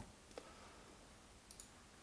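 Near silence with two faint computer mouse clicks, one about a third of a second in and one about a second and a half in.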